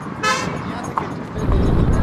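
A vehicle horn gives one short toot. About a second and a half in, a loud low rumble begins.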